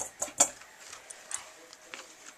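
A dog eating a crunchy marrow-bone treat: two sharp crunches close together near the start, then fainter scattered crunches.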